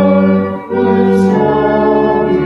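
Two-manual organ playing sustained chords, the sound dipping briefly about half a second in before the next chord sounds.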